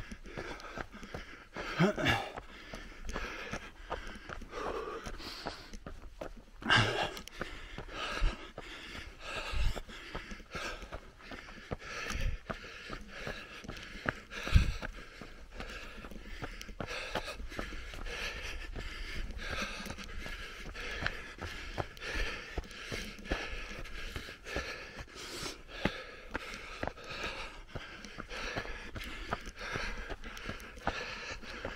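Running footsteps on a dirt trail, steady and evenly spaced, with the runner's breathing and a short laugh about two seconds in. A few low thumps stand out now and then, the loudest about halfway through.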